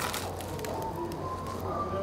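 A bite into a crusty toasted sandwich crunches at the start, then gives way to quiet chewing over a steady low hum and a few faint tones.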